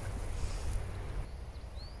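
Outdoor ambience: a steady low rumble of wind buffeting the microphone, with a bird giving a short rising chirp near the end.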